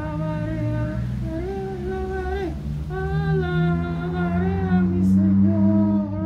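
A high, childlike put-on voice singing a slow wordless tune in long held notes that slide between pitches, over a low steady drone.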